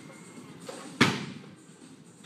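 One sharp slam about a second in, fading quickly: the catch of a barbell clean, the bar loaded with bumper plates landing at the lifter's shoulders.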